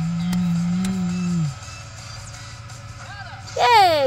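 A person's voice holding a low hummed note that sinks at its end, then a loud high vocal swoop falling in pitch near the end.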